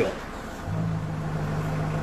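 A steady low mechanical hum starts just under a second in and holds evenly, after a last spoken word at the very start.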